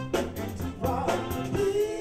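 Live R&B vocal group singing over a band with a drum kit and electric guitar, with a steady beat of drum and cymbal hits and a held sung note near the end.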